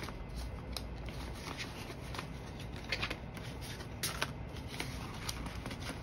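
Paper banknotes rustling and crinkling as they are handled and tucked back into a clear plastic cash-envelope pocket, with scattered small clicks.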